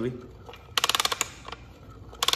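A quick burst of sharp metallic clicks, about eight in under half a second, about a second in, as the rebuilt 2013 Suzuki RM-Z450 engine's bottom end is kicked over on the bench, turning nice and smooth.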